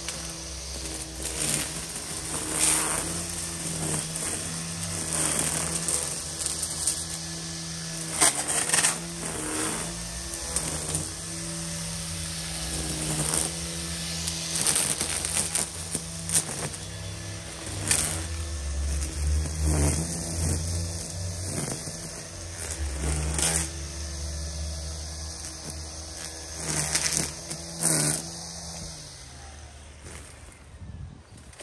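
EGO cordless string trimmer running steadily while cutting weeds, its line giving frequent sharp hits as it strikes stems and ground. The motor note dips briefly now and then as it loads up.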